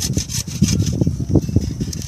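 Hand pruning saw cutting through a branch of a young quince tree with quick back-and-forth strokes, its coarse teeth rasping through the wood.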